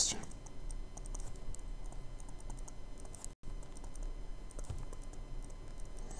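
A stylus tapping and scratching on a tablet screen as words are handwritten: a scatter of faint, light clicks over a steady low hum.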